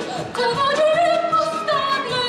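An operetta song: a voice singing long held notes with vibrato over orchestral accompaniment, a new phrase starting just after the beginning.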